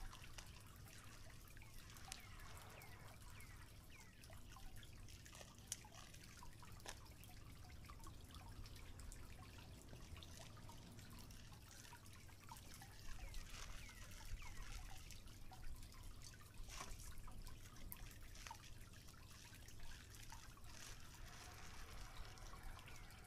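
Faint bubbling and ticking of a small pot of liquid simmering over a wood campfire, with scattered small clicks throughout and a livelier patch in the middle.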